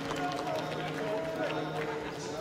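Indistinct voices at a low, steady level over the room noise of a boxing arena, with no distinct impacts.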